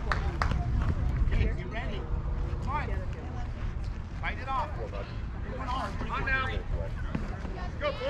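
Scattered shouts and chatter from players and spectators at a softball field, over a low steady rumble that is strongest in the first second and a half.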